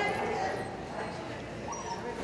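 A dog barking during an agility run, with a short rising yelp near the end.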